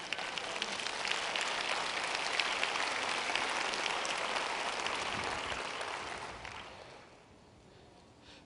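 A large audience applauding, a dense spatter of clapping that builds at the start and dies away about seven seconds in.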